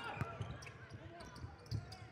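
A basketball bouncing on a hardwood court: a few separate thuds spread across two seconds.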